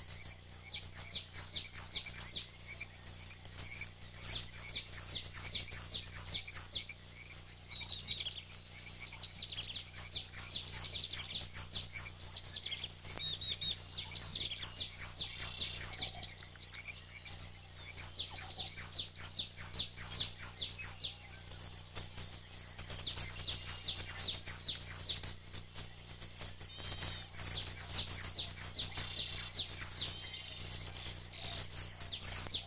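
Small songbirds chirping in quick runs of short, high, falling notes, the runs broken by brief pauses. A faint steady low hum and a thin high whine run underneath.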